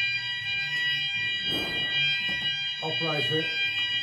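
Fire alarm sounders going off with a steady, high electronic tone made of several pitches at once. The alarm was set off on purpose with a call point test key, as part of a system test.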